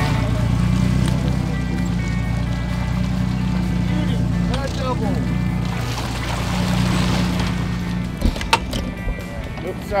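A fishing boat's engine running steadily, a low, even drone, with faint voices of people on deck and a sharp knock about eight and a half seconds in.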